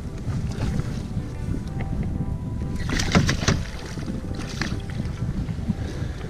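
Wind rumbling on the microphone beside a small aluminium boat, with water slapping at the hull and faint background music. A short flurry of splashing comes about three seconds in, and a smaller one a second later, as a hooked pike is brought to the side of the boat.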